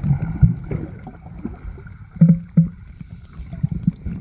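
Muffled sound of water moving around a camera held under the sea: an irregular low rumble and sloshing, with two louder dull thumps a little past halfway and a faint steady whine above.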